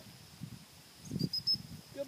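Steady high-pitched insect drone over the field, with a few short chirps near the middle. Several low thuds about half a second to a second and a half in are the loudest sounds.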